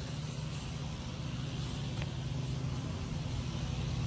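Steady low engine hum of a motor vehicle, with a faint even hiss above it.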